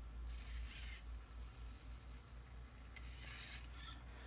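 Faint whirring of the hobby servos that drive an animatronic Teddy Ruxpin's neck tilt, in two short spells: one soon after the start and one near the end.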